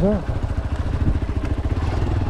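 Hero XPulse 200's single-cylinder engine running steadily while the motorcycle is ridden, its firing strokes a fast, even pulse.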